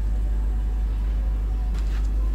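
Steady low rumble of a river cruise ship's machinery, heard from the ship's open deck, with no change in level.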